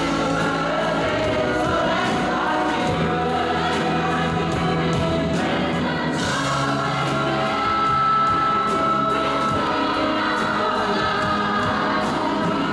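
A choir singing with a mixed instrumental ensemble accompanying it, over a steady beat.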